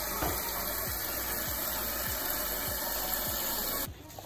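Water from a garden hose running into a plastic watering can: a steady rushing noise that cuts off suddenly just before the end.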